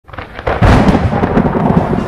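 Thunder rumbling, fading in from silence and swelling loud about half a second in.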